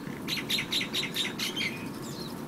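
A quick run of short, high chirping calls from a small animal, about six a second, stopping shortly before the end.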